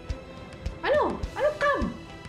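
Two short whimpering cries, each rising then falling in pitch, one right after the other, over background music.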